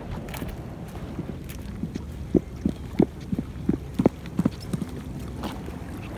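Footsteps on an asphalt road, short even steps at about three a second, over a steady low rumble.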